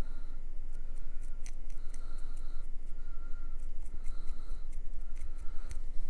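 Stiff dry brush stroked back and forth over a small plastic miniature: a regular run of about seven short scraping strokes, each around half a second long, with light clicks of the brush and model between them.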